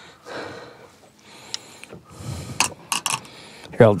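Soft splashing and rustling, then a few sharp clicks and knocks in the second half, as a hooked smallmouth bass flops in a landing net against the side of the boat.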